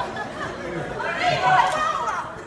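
Speech: a man talking into a stage microphone.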